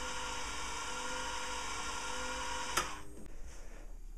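Homemade antenna rotator, driven by a converted hand-drill motor through a gear drive, running with a steady whine during a bench test, then stopping abruptly with a click about three seconds in.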